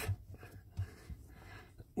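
Faint scuffing and a few soft knocks from a hand trying to push a plastic electrical plug onto a car's clutch pedal position sensor. The plug is not going in.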